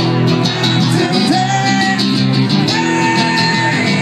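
Live rock song on strummed guitars, one of them acoustic, with a man singing long held notes over the steady strumming.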